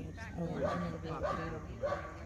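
Young Airedale terrier vocalizing during bite work while gripping the tug, a few short pitched calls, with people's voices alongside.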